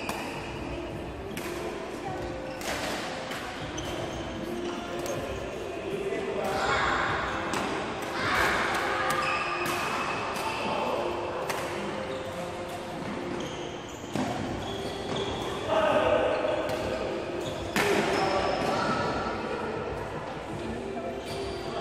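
Badminton rackets striking shuttlecocks again and again in rallies, sharp knocks echoing in a large sports hall, over a steady background of players' voices.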